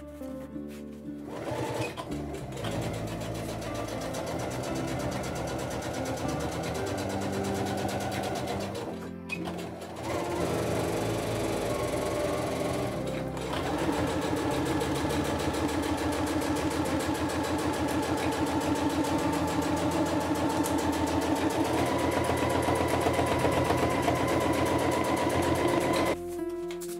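Minerva electric sewing machine stitching in long steady runs as it quilts wavy lines through fabric. It starts about two seconds in and breaks off briefly around nine and again around thirteen seconds in.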